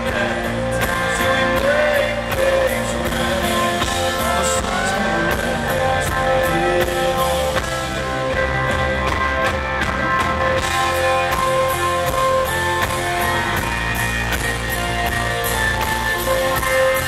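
Live band playing an instrumental passage of a country-rock ballad: guitars and drums, with held lead notes that glide in pitch now and then.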